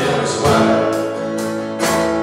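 Live band playing a song: strummed acoustic guitar, electric lead guitar, bass and drums, with sharp drum and cymbal hits over the sustained guitar chords.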